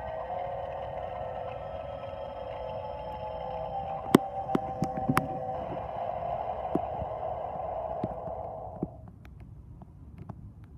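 Spirit Halloween Limb Eating Zombie Boy animatronic playing its eerie, droning soundtrack of held tones. A run of sharp clicks comes about four to five seconds in and a few more later. The sound cuts off suddenly about nine seconds in.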